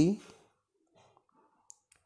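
A dictation voice finishes a spoken Hindi phrase, then pauses in near silence. Near the end comes a faint, brief mouth click, just before the next phrase.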